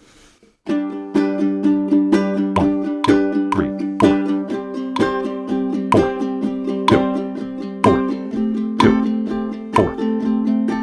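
Ukulele strummed in a steady down-up eighth-note pattern, one downstroke on each beat and an upstroke on each "and", played along with a 133 bpm 4/4 drum and bass backing track. The downstrokes on the snare beats are struck slightly harder for emphasis. It starts just under a second in, after a short pause.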